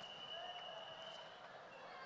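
Faint arena background ambience with a steady high-pitched tone held throughout.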